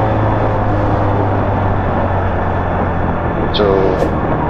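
Rusi Mojo 110cc mini bike's engine running steadily while riding, a low steady hum under a wash of wind rushing over the camera's microphone.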